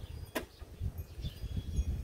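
A single sharp click about a third of a second in, as a fitting on the Toro 60V Recycler battery mower's folding handle is put back in place, over a low rumble of wind on the microphone.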